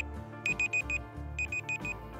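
Countdown timer sound effect: alarm-clock-style beeping in two bursts of four quick high beeps, about a second apart, over soft background music.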